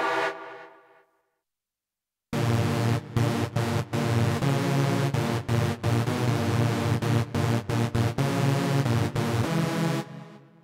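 Rob Papen Go2 software synthesizer playing preset demos. One patch dies away in the first second, and after about a second of silence a new patch starts a dense, rhythmic, pitched pattern with a heavy low end, chopped by short gaps. It stops near the end and rings out briefly.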